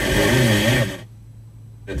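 A man's voice from a radio talk programme played over the car's audio system, breaking off about a second in; a low steady hum runs underneath.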